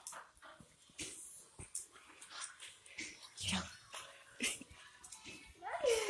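A Rottweiler and a pit bull play-fighting, with short, scattered grunts and whimpers. Near the end comes a louder whine that falls in pitch.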